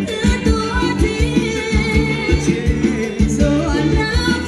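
Thai ramwong dance music played by a band through loudspeakers, with a singer over a quick, steady drum beat and bass line.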